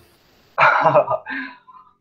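A man's short laugh in two quick bursts, the second trailing off.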